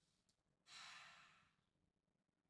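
A faint sigh: one breath let out a little over half a second in, fading away over most of a second, against near silence.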